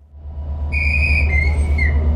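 A passenger train rolling slowly into the platform under shunting: a low rumble that builds, with a high whistling squeal for about a second in the middle that steps down in pitch.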